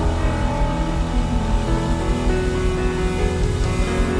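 Slow worship music from a live church band: sustained chords held over a deep bass, steady in level.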